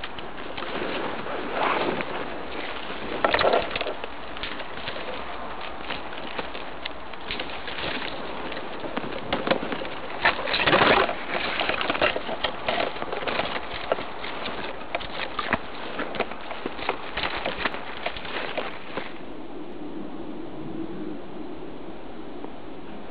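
Irregular rustling and crackling from something being handled close up, with several louder cracks, stopping shortly before the end.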